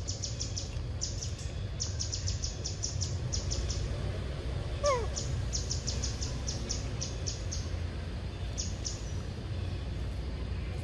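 Outdoor ambience of rapid trains of high-pitched bird chirps, starting and stopping every second or so, over a steady low rumble. About five seconds in there is a single short call falling in pitch.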